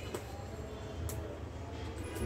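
Faint handling of a fabric duffel bag: two short clicks, about a second apart, over a low steady hum.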